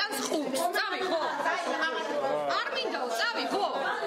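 Several people talking over one another in an agitated exchange, a woman's voice closest.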